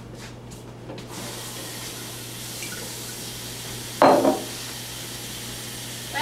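Kitchen tap running into a sink while dishes are washed, a steady rush of water with one short clatter of a dish about four seconds in. The tail of guitar music fades out in the first second.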